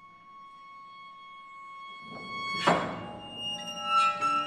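Contemporary chamber music for clarinet, violin, cello and piano: a long, quiet held high note, then about two-thirds of the way in a sudden loud struck attack and new sustained tones.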